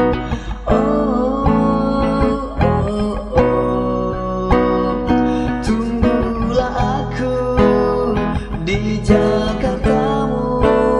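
Instrumental break of a pop song, led by guitar: chords strummed in a steady rhythm with sustained notes over them.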